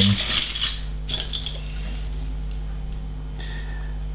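Loose plastic LEGO bricks clattering and clicking against each other as hands rummage through a pile of pieces, busiest in the first second and a half, then only a few scattered clicks. A low steady hum runs underneath.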